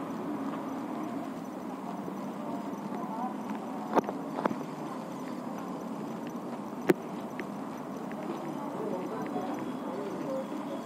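Indistinct background voices and a steady murmur, with three sharp clicks or knocks: one about four seconds in, another half a second later, and a louder one about three seconds after that.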